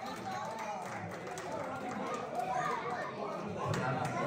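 Indistinct chatter: several people talking at once in the background, with no single voice standing out.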